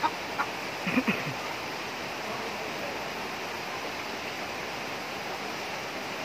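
Steady hiss of background noise, with a few short high squeaks and one low sound falling in pitch in the first second or so.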